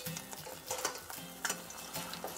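Tempura-battered sushi roll frying in a saucepan of hot oil with a light sizzle, while metal tongs turn it and click against the pan a few times.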